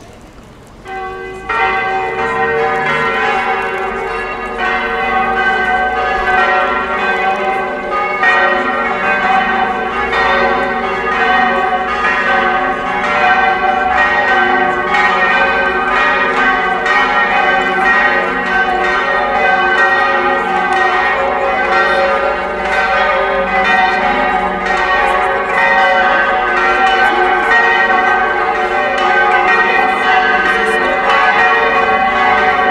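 Church bells of St. James Church ringing, struck over and over. They start suddenly about a second in and keep ringing steadily.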